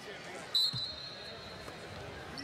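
A referee's whistle blown once about half a second in: a steady high tone that trails off over about a second and a half. A basketball bounce comes just after it, over the hum of the arena crowd.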